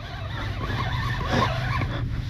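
Fishing reel being cranked steadily under the load of a hooked fish, with a steady low hum over wind and water noise.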